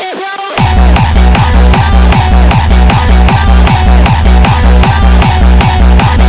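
Electronic dance music: a synth melody alone, then about half a second in a heavy bass and kick-drum beat comes in and keeps a steady, driving rhythm.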